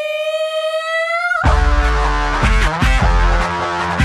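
Live rock band on stage. A single high note is held alone, bending slightly upward, and about a second and a half in the full band crashes in with drums, bass and guitar.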